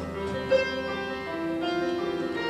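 Stage keyboards playing a slow melody of held notes that step from one pitch to the next.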